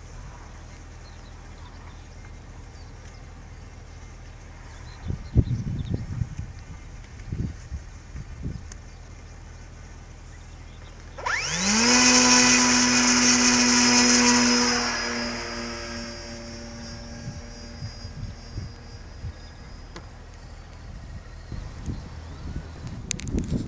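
Electric motor and propeller of a small fixed-wing survey drone spinning up to full throttle about eleven seconds in, with a fast rising whine. It holds a steady high-pitched buzz for a few seconds, then drops in level and fades away. A few short thumps come earlier.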